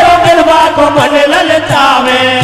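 Men singing a hari kirtan devotional song through microphones, one voice holding a long note, with a drum beating steadily underneath at about three beats a second.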